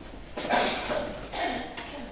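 Two brief vocal sounds from a woman, about half a second and a second and a half in, too short to be words, heard in the stage's room sound.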